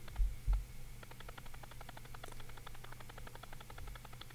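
Faint rapid ticking, many ticks a second, starting about a second in, over a steady low hum, after two soft low thumps near the start.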